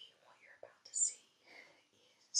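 A woman whispering quietly, with sharp hissed 's' sounds.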